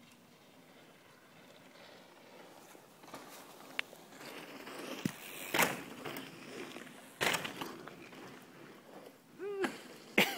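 Mountain bike coming down a dirt trail toward the microphone, its tyres on the loose dirt growing louder, with two sharp knocks about five and a half and seven seconds in.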